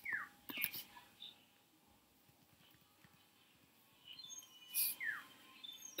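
A few quiet computer-keyboard keystrokes and clicks, separated by near silence. Twice, near the start and about five seconds in, a short chirp slides quickly downward in pitch.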